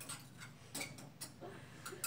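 Faint, irregular light clicks, a few each second, in a quiet room, with a faint brief voice sound near the end.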